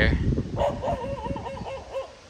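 A dog whining: a thin, wavering high tone held for over a second and fading near the end, with low rumbling noise on the microphone at the start.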